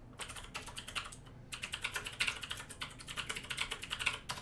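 Typing on a computer keyboard: a short run of keystrokes, a brief pause, then a longer quick run of key clicks.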